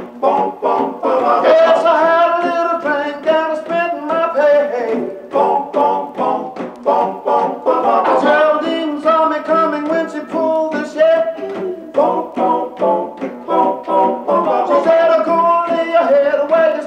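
Male doo-wop vocal group singing in close harmony over a light backing, in a steady rhythm of short notes.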